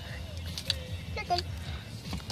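Steady low hum of a car cabin with faint music playing, and a single short spoken word about a second in.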